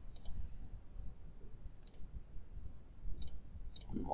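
Computer mouse button clicks, four sparse sharp ticks, the last two close together near the end, over a faint low hum.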